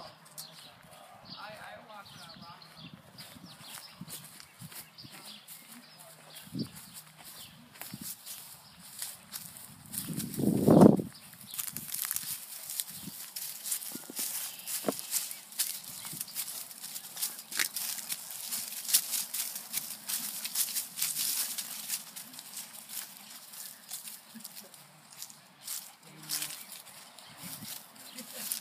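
Footsteps and rustling through dry leaves and grass, a steady crackling that grows denser after the first dozen seconds, with scattered small clicks and one loud low thump about eleven seconds in.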